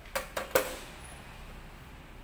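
Metal loaf tin knocking against a stainless-steel worktable: three quick clanks in about half a second, the last the loudest with a brief metallic ring.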